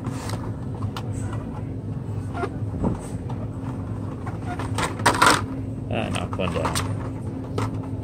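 Hot Wheels blister-card packages being handled on store pegs: scattered light clicks and knocks of card and plastic, with a louder crinkling rustle about five seconds in. A steady low store hum runs underneath, and a faint voice is heard about six seconds in.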